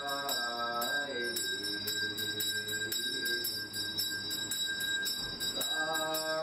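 Buddhist sutra chanting with a small ritual bell struck in an even rhythm, about three strikes a second, its ringing sustained. The chanting voice is clearest in the first second and again near the end.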